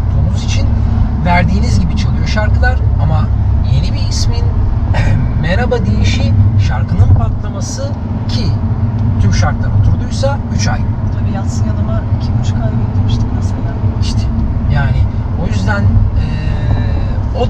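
Two people talking inside a moving car's cabin, over the steady low rumble of the engine and tyres on the road.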